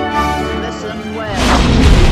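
Orchestral intro music, then about a second and a half in a loud booming blast with a brief sweeping whoosh: a fiery magic-spell explosion effect from a film clip.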